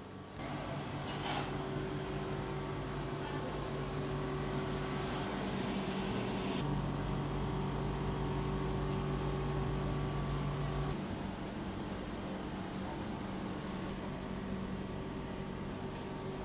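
Portable dehumidifier running: a steady machine hum with a low drone and a few constant tones. It grows louder about seven seconds in and eases back about four seconds later.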